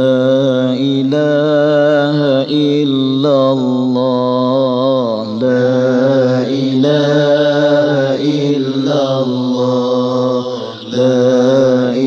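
Vocal chanting in long, wavering held notes over a steady low drone, sung in phrases of a few seconds each, as an intro chant (nasheed-style) for an Islamic lecture.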